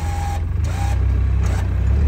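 Polaris Ranger UTV engine working under load as the machine pushes snow with its front plow blade: a steady low drone that grows a little louder towards the end. Two brief high beeps sound near the start.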